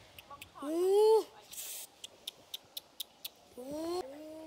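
A boy's voice calling out in a long rising-and-falling call about a second in, followed by a run of sharp clicks at about four a second, and another call beginning near the end.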